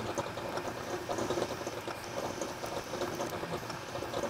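Small metal lathe turning a metal handle blank, its tool bit cutting the work with a steady crackling hiss as it is fed by hand wheel to rough down a curved neck.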